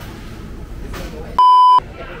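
A single loud, steady, pure beep lasting under half a second, about one and a half seconds in, with all other sound cut out while it lasts: an edited-in censor bleep. Around it, low background murmur of a busy room.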